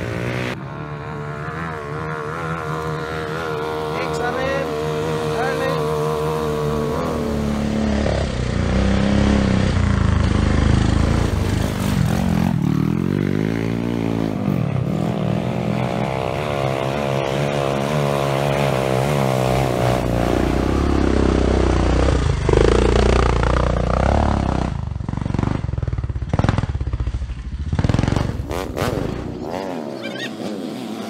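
Trail motorcycle engines revving, their pitch climbing and falling again and again as the throttle is worked, with more than one bike running at once in places.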